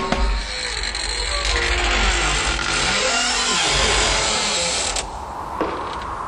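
Creaking, scraping mechanical noise over a low hum, with faint sliding tones; the high hiss drops away about five seconds in.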